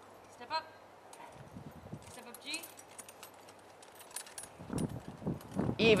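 Faint, irregular hoofbeats of a Morgan horse walking while being ground-driven, with a quiet voice calling briefly twice. A low rumble rises near the end.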